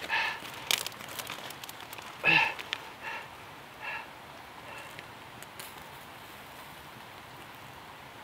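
Faint crackle and hiss of a burning sear strip fire starter held under a pile of twigs, with a few sharp clicks from twigs being handled.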